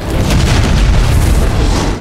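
Loud, steady, deep rumbling roar from the film's soundtrack, a disaster-scene sound effect. It cuts in and out abruptly with the edit.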